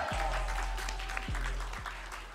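Audience applauding over the end of a hip-hop backing track, its deep bass giving a few falling swoops as the music fades out.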